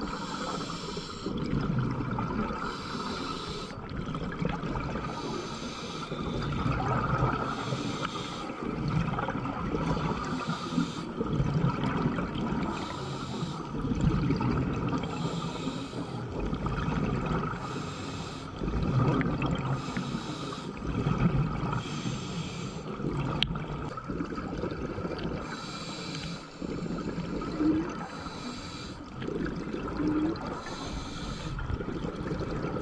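A scuba diver breathing through a regulator, heard underwater: a low rumble of breath through the demand valve, with a rush of exhaled bubbles every two to three seconds.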